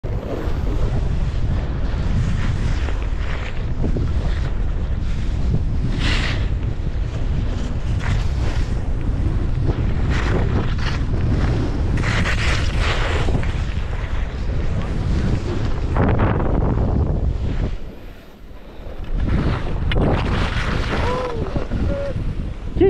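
Wind buffeting the microphone of a skier's camera as he skis downhill, with the hiss of skis scraping through snow on each turn. The rush drops away suddenly about eighteen seconds in as he slows to a stop.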